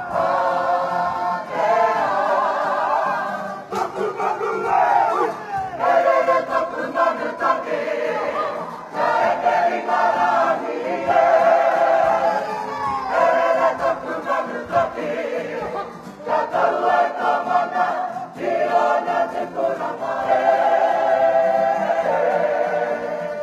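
A kapa haka group singing together in Māori, many voices in unison, in sung phrases of a couple of seconds with short breaks between them.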